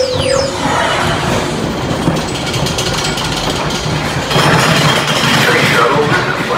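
Falling electronic sweeps and a held tone from the ride's tunnel soundtrack end about half a second in, leaving the steady rumble and clatter of a Space Mountain roller-coaster car rolling along its steel track, louder from about four seconds in.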